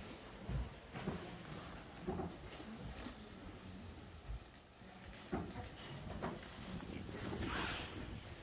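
Faint background noise: a low rumble with a few soft knocks, and a brief rustle near the end.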